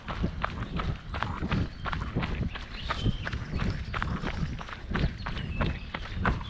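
Running footsteps on a dirt forest trail, about three steps a second, over a steady low rumble.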